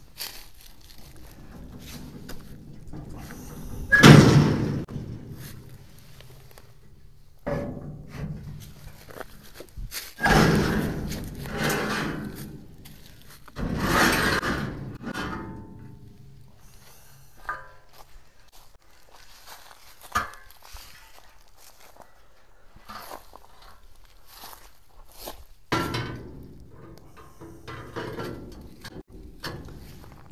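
Steel trailer loading ramps being pulled out and set in place: a series of heavy metal thunks and knocks, the loudest about four seconds in, more around ten and fourteen seconds, and lighter ones later.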